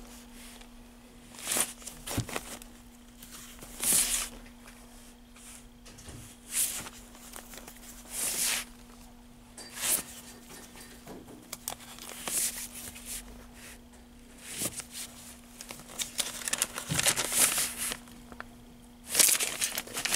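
Cardboard LP jackets and paper sleeves brushing and scraping against each other as records are flipped through one at a time in a plastic bin, a swishing rustle every second or two. A steady low hum runs underneath and stops near the end.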